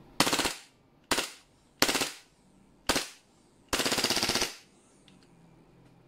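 WE Glock gas blowback airsoft pistol with a muzzle suppressor firing on full auto in five short bursts of rapid shots. The last burst is the longest, about three-quarters of a second, and it runs the magazine empty so the slide locks open.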